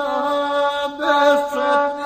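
Gusle, the single-string bowed fiddle of Serbian epic song, playing a held note with quick ornamental dips in pitch, in a nasal, chant-like tone.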